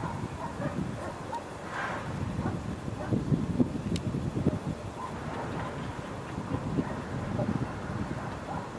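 Wind buffeting the camera microphone: an uneven low rumble that swells and fades, with one sharp click about four seconds in.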